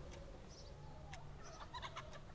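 Quiet room tone with a few faint, distant bird calls and small clicks.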